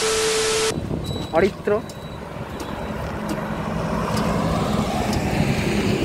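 A TV-static glitch transition effect: a burst of hiss with a steady beep, lasting under a second. Then a motorcycle engine idles steadily, growing slightly louder toward the end.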